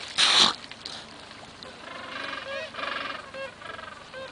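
A brief loud rush of noise just after the start, then an animal's repeated honking calls, pulsing for about a second and a half in the second half.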